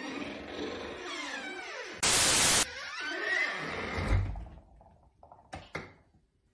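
A loud burst of static-like white noise lasting about half a second, about two seconds in, over a busy layer of edited sound effects with gliding tones, then a low thump just after four seconds and a couple of faint clicks near the end.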